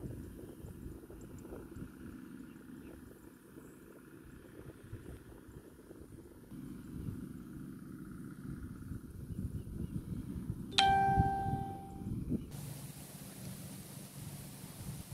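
Low rumble of wind and handling noise on a phone microphone outdoors. About eleven seconds in, a single bright ding starts suddenly and rings out for a second or two.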